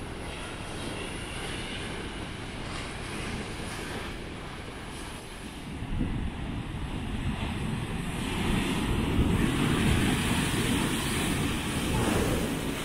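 Ocean surf breaking and washing over a rocky shore, with wind buffeting the microphone. The wash swells louder about halfway through.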